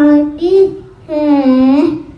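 A young child singing a rhyme, holding two long notes with a short break between them.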